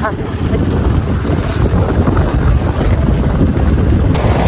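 Wind buffeting the microphone on a moving motorcycle, over a steady low rumble of engine and road.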